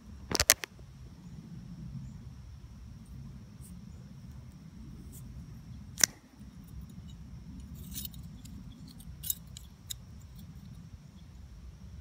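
Handling of a removed metal turbo oil line with banjo fittings: a few sharp clicks and taps, a pair about half a second in, one at about six seconds and lighter ones near eight and nine seconds, over a low steady rumble.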